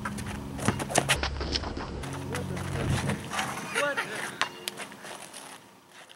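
Outdoor basketball court sounds: a basketball bouncing on the asphalt court with a few sharp knocks and players' voices, with geese honking about three and a half to four seconds in. The sound fades out near the end.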